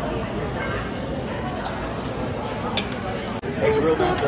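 Indistinct background chatter of voices in a busy restaurant over a steady hiss, broken by a brief dropout near the end, after which a voice comes in louder.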